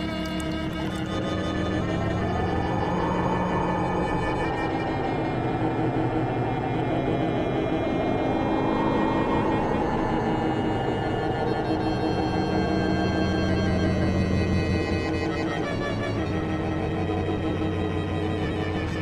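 Eerie, slow instrumental score of sustained drone-like tones. A hissing, whoosh-like layer twice swells up in pitch and falls away, once a few seconds in and again near the middle.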